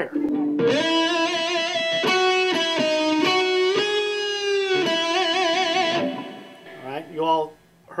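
Electric guitar playing a slow melodic lead line of single held notes, a harmony a third above a vocal melody. The notes change every half second or so, with one long note around the middle and vibrato on the last notes, and the line stops about six seconds in.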